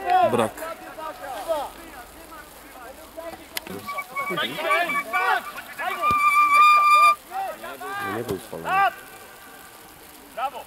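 Voices calling and shouting across a football pitch, with one long held call about six seconds in and a single sharp knock a little after three and a half seconds.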